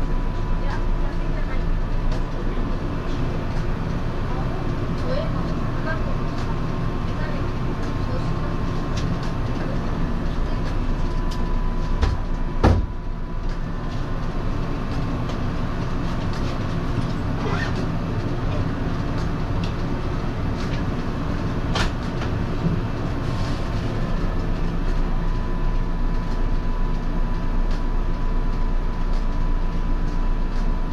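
Echizen Railway MC6001 electric railcar standing still, heard from the driver's cab: a steady hum of its onboard equipment with a thin high tone. Two sharp clicks sound, one just before the middle and another about two-thirds of the way in.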